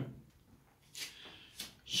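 Faint rustling of a stretchy wetsuit-fabric face mask being handled, in a couple of short bursts about a second in.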